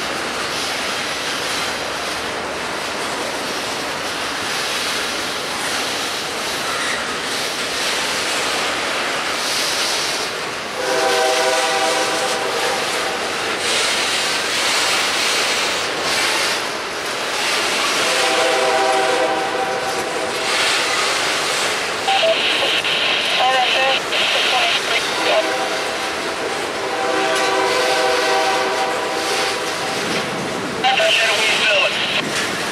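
A double-stack intermodal freight train rolling past, its steel wheels on the rails making a steady rumble and clatter. A train horn sounds three times, each blast a couple of seconds long, and a high squeal rises for a few seconds between the second and third blasts.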